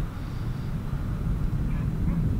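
Wind buffeting the microphone outdoors: a steady, uneven low rumble with no other distinct event.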